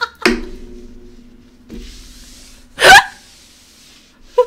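A woman's single short, sharp hiccup-like vocal burst about three seconds in, the loudest sound here. A faint steady low tone runs underneath before it.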